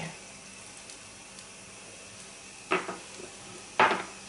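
Yeast pancake batter frying in hot fat in a pan, a steady soft sizzle. Two brief knocks come through it, about two thirds of the way in and a louder one just before the end.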